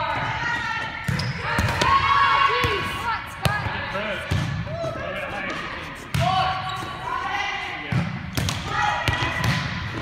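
Volleyballs being set and bouncing on a hard court floor: several sharp smacks, a second or more apart, under the chatter and calls of young players.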